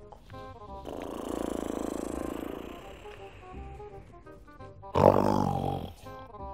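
A man snoring over background music: two snores, a longer one starting about a second in and a louder, shorter one near the end that falls in pitch.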